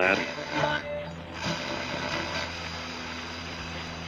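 Sound-effect transition: a steady wash of static-like noise mixed with mechanical clicking and rattling.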